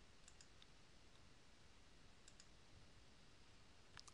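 Near silence with faint computer mouse clicks: a quick double click about a third of a second in and another a little after two seconds, as a dropdown is opened and an option picked.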